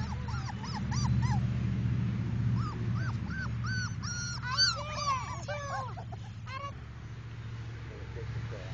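Young English Pointer puppies whining and yelping in a run of short, arched, high-pitched cries. The cries are busiest around the middle and thin out near the end, over a steady low hum.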